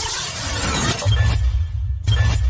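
Electronic intro sound effect for an animated title graphic: a bright sweeping whoosh that gives way, about halfway in, to a deep bass sound with sharp hits about once a second.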